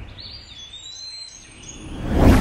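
Faint high-pitched chirping tones gliding over a low rumble, quieter than the music just before.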